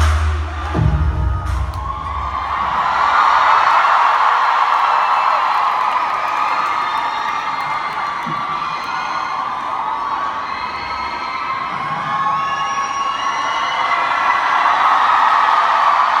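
Large arena crowd cheering and screaming, which swells again near the end; the last of a music track with heavy bass cuts off about a second in.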